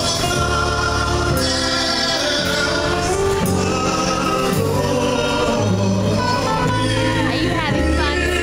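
A live gospel vocal group singing with band backing through a PA, a man's voice among the singers, over a bass line that moves from note to note about once a second.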